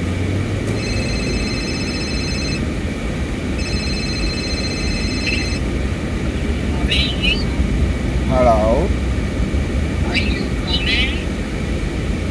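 Car cabin road and engine noise while driving, with a phone ringing twice in the first six seconds, each trilled ring lasting about two seconds. Short snatches of voice come later.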